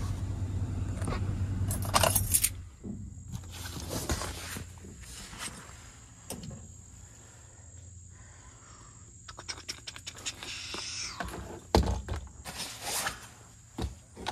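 A vehicle engine idles and cuts off about three seconds in. Then come scattered rattles, clicks and a few knocks from tools and gear being handled in the back of a service van.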